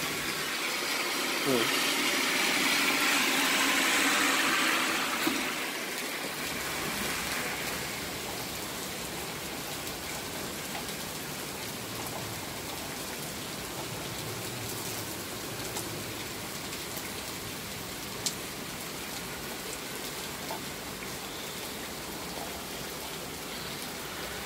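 Heavy rain falling on a street, pavement and grass: a steady hiss. During the first five seconds a louder rushing swell rises and fades back into the rain.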